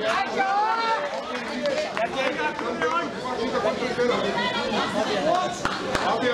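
Boxing spectators chattering: many overlapping voices talking at once, with no single speaker standing out.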